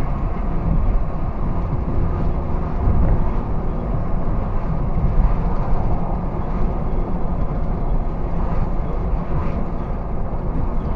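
Steady road noise inside a moving car, picked up by a dashcam microphone: an even rumble of tyres and engine with no distinct events.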